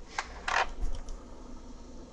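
Brief rustles and light clicks of a colored pencil being picked up and handled over the paper, with a soft low bump about a second in.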